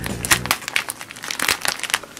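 Plastic sleeve pages of a sticker album crinkling and rustling as they are handled and turned: a string of short, crackly rustles.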